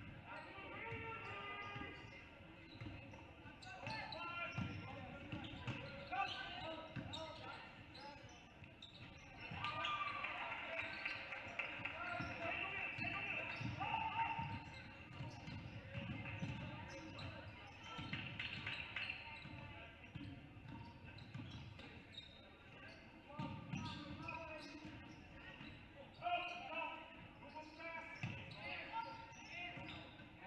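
Basketball being dribbled on a hardwood gym floor, repeated thumps under voices of players and spectators echoing in a large gymnasium.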